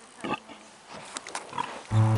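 A pig gives one short grunt about a quarter second in, followed by a few faint clicks and rustles; music comes in at the very end.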